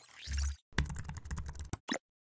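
Keyboard typing sound effect: a quick run of key clicks lasting about a second, then a single separate click near the end. It opens with a short whoosh over a deep low thud.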